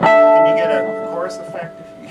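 Strings of an electric violin built from a baseball bat plucked sharply at once, the note ringing and fading away over about a second and a half. Voices talk over it.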